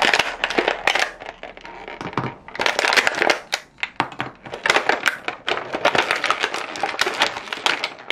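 Thin clear plastic blister tray crackling and creaking as it is flexed and toy figures are popped out of its moulded slots, in dense runs of crackles with brief lulls.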